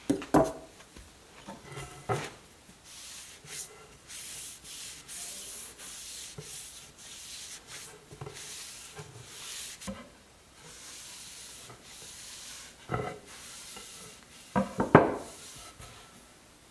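A cotton rag rubbing finish along a new wooden sledge hammer handle, a run of soft swishing strokes. A few knocks of wood on the workbench come near the start and near the end, the loudest just before the end.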